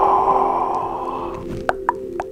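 A long breathy "ahh" into a close microphone, held and fading away over about the first second and a half. It is followed by a quick run of sharp clicks close to the microphone, over soft steady background music.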